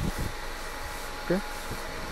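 A pause in the talk: steady low background noise of the room, with one short spoken syllable about a second and a half in.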